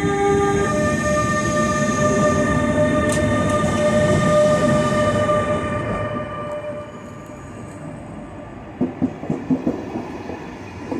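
Bombardier TRAXX E186 electric locomotive moving off, a steady multi-tone electric whine from its traction equipment over the rumble of the train, with a shift in the tones under a second in. About six seconds in, as the coaches follow it, the sound drops to a quieter rolling noise, and a quick run of wheel clacks over rail joints comes near the end.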